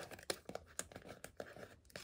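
Faint rustling and scraping of paper and cardboard as an album's photobook and its cardboard case are handled and slid against each other, with a few soft clicks.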